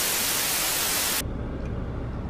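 Burst of TV-static hiss used as an editing transition, cutting off suddenly about a second in. A low steady hum from inside the car's cabin is left.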